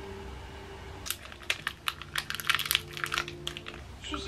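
A quick, irregular run of light clicks and taps, starting about a second in and lasting almost to the end, over a faint steady low tone.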